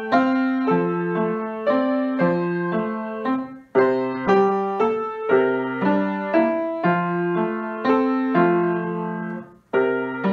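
Grand piano played solo: a simple melody over an even, repeating accompaniment of decaying notes. The playing breaks off briefly between phrases, about four seconds in and again just before the end.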